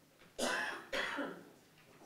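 A person coughing twice in quick succession, two short coughs about half a second apart.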